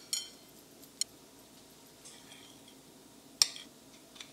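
A metal fork clinks against a ceramic bowl three times: once at the start, again about a second in, and loudest near the end. Each clink is short and sharp, with a brief ring.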